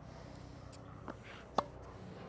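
A soft tap about a second in, then one sharp pop of a tennis racket's strings striking the ball on a one-handed topspin backhand.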